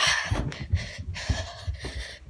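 Footsteps thumping up stairs, about three a second, with close breathing on the phone's microphone.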